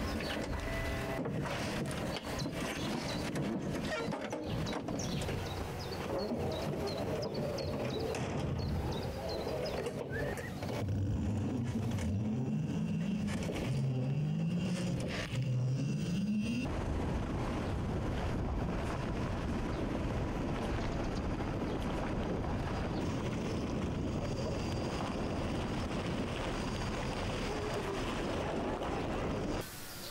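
Homemade electric car driving, with steady road and tyre noise. Near the middle come several short rising whines, one after another.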